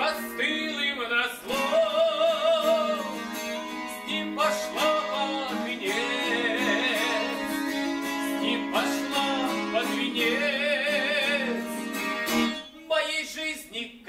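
Acoustic guitar strummed while a man sings long, held notes with a wavering vibrato, with a short break in the playing near the end.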